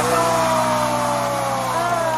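A young girl singing a long held note that slides slowly downward, over a sustained backing chord.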